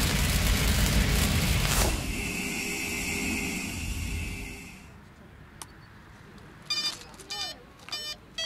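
Cinematic logo sting: a deep boom and whoosh followed by a shimmering, hissing swell that fades away about five seconds in. Near the end come a few short electronic beeps.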